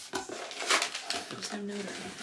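Packaging rustling and crinkling as a folded jersey is pulled out of a cardboard box, with the box being handled.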